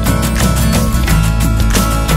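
Band music with a steady drum beat: an instrumental stretch between sung lines of the song.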